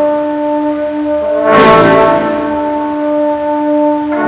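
Brass band playing a slow sacred funeral march, the brass holding sustained chords. About a second and a half in, a single cymbal crash with a drum stroke rings out over the chord.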